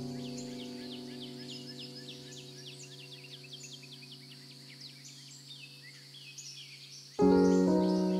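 Soft piano chord held and slowly dying away, with a new chord struck about seven seconds in. Under it runs birdsong: quick chirps, many falling sharply in pitch, several a second.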